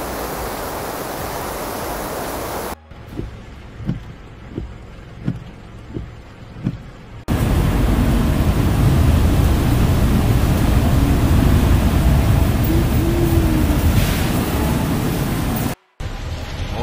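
Floodwater rushing, in clips joined by hard cuts. First comes a steady torrent. Then a quieter stretch of water with about six soft, regular knocks roughly two-thirds of a second apart. Then a loud, deep rush of flood water that lasts until a sudden cut near the end.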